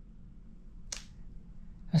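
Quiet room tone with a faint steady low hum, broken by one short, sharp hissing click about a second in; a man's voice starts right at the end.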